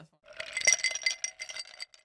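A quick run of glassy clinks with a ringing, chime-like tone, lasting about a second and a half before it cuts off: a glass-clink sound effect.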